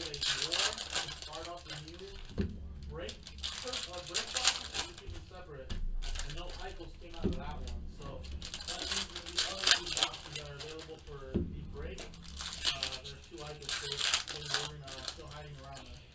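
Foil trading-card pack wrappers crinkling and tearing as baseball card packs are opened by hand, with a few light taps as cards are set down on the table.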